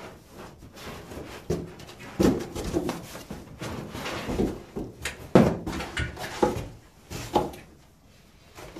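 A large cardboard box and its cardboard packing sheet being handled: irregular rustling, scraping and knocks, the loudest about five seconds in.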